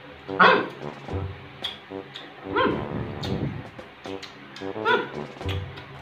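Background music with a steady tune, over which a dog barks several times in short, separate barks.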